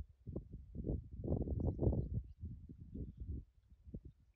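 Wind buffeting the microphone outdoors: irregular low rumbling gusts, strongest in the middle and easing off near the end.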